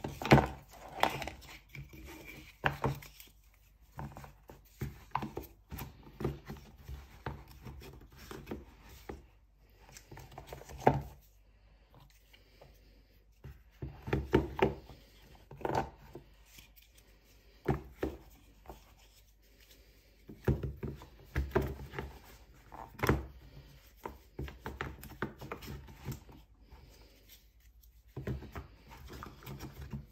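Thick cardboard board books being set down, knocked together and slid into a cardboard tray one after another, giving irregular knocks and taps with rubbing and scraping in between.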